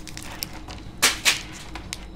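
Plastic trading-card pack wrapper crinkling as a stack of cards is slid out of it, with a few short rustles, the loudest about a second in.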